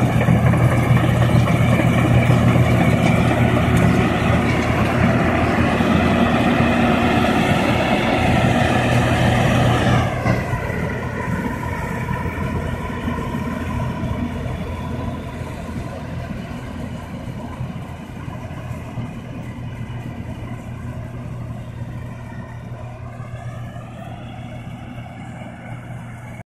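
Zukai 600 combine harvester running steadily while cutting barley. Its engine note dips in pitch and loudness about ten seconds in, then grows gradually fainter as the machine moves away, with a short rise in pitch near the end.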